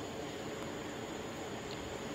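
Steady outdoor background noise: an even hiss with a faint constant hum, and no distinct event.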